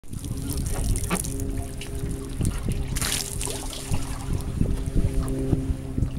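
Water dribbling and splashing off the hull of a homemade model jet boat, with a burst about three seconds in and scattered light knocks as the boat is handled. A steady low hum of a few held tones runs underneath.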